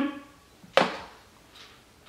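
A single sharp click, as of a small plastic makeup tub being handled, about three quarters of a second in, followed by a couple of faint handling ticks.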